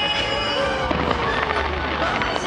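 Aerial fireworks bursting continuously, a dense run of crackles and pops.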